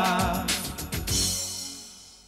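Closing bars of a Hindi TV series' title song: the end of the sung line, a few last band hits, then a final chord that rings out and fades.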